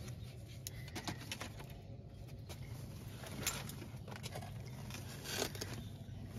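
Horticultural fleece being rustled as it is gathered and lifted off seedling trays, with scattered short crackles and scrapes.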